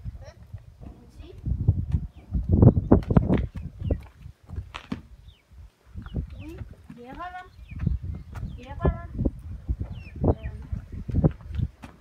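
Short stretches of indistinct talking, with low thumps and rumbles of handling close to the microphone.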